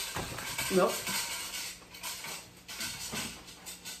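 Close-up eating sounds: a piece of crispy fried chicken being pulled apart and bitten, with crackly crunching and small clicks that fade about two and a half seconds in.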